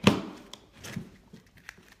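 An oyster knife working into an oyster's shell: one sharp crack right at the start, then a few faint clicks as the blade scrapes the shell.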